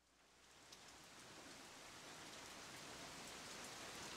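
Recorded rain fading in from silence, faint at first and growing slowly louder, an even hiss of rainfall with light drop ticks.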